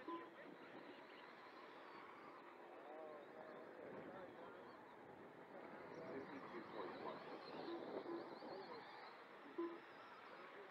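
Faint, indistinct voices in the background over a low outdoor hum, with no clear foreground sound.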